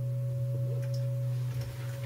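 Electric bass guitar holding a single low note that rings on as a steady, pure tone and fades near the end, with a few faint clicks of fingers on strings.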